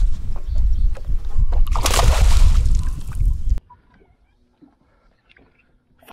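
Water sloshing against the hull of a bass boat under a loud, gusty low rumble of noise. It cuts off suddenly about three and a half seconds in, leaving only faint sound.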